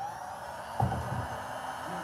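Handheld heat gun switched on, its fan whirring briefly up to speed and then blowing a steady hiss of hot air over wet pouring paint. A dull thump comes in just under a second in.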